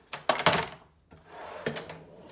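Large steel impact sockets clinking against each other in a toolbox drawer as a hand shifts them, several sharp clinks with a metallic ring in the first half second. Then the drawer slides shut on its runners.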